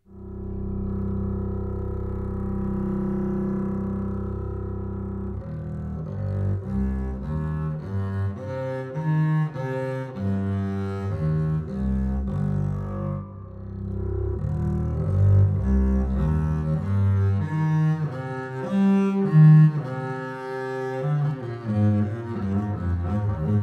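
Embertone's Leonid Bass, a sampled orchestral double bass, played bowed and legato from a keyboard. A long held low note runs for about five seconds, then gives way to a flowing line of shorter slurred notes.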